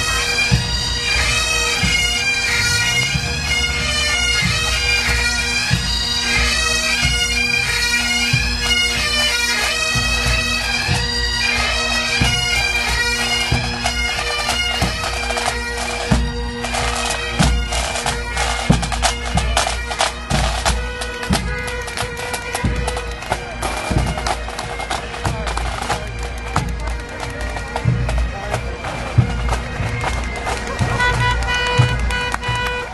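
Marching pipe band: Highland bagpipes playing a tune over their steady drones, with snare and bass drums. From about halfway through, the drumming grows dense and prominent while the drone carries on underneath.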